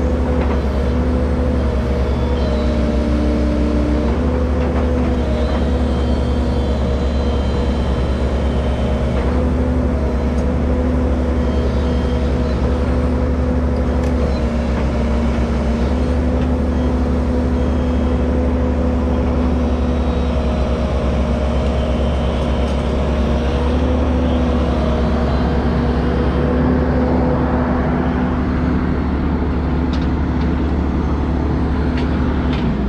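Compact crawler excavator's diesel engine running steadily while the boom and bucket dig, its hum and whine stepping slightly up and down in pitch now and then as the hydraulics are worked.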